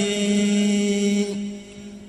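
A man chanting a xassida, an Arabic devotional poem, through a microphone, holding one long steady note that fades out about a second and a half in, followed by a short pause.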